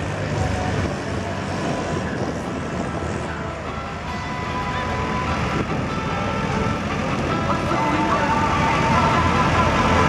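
Diesel tractor engines running at low speed: the Fendt 612 LSA and the orange sled-retrieval tractor. A thin whine joins in about halfway, and the sound grows louder toward the end.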